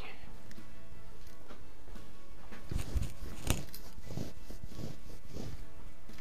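Footsteps and a few sharp knocks of someone walking and handling things in a small room, the loudest knock about three and a half seconds in.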